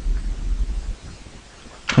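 Low background hum from the recording setup that drops away about a second in, leaving faint room tone.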